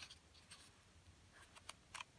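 Faint rustle and small ticks of paper pages being leafed through by hand in a digest-size magazine, the ticks coming in the second half.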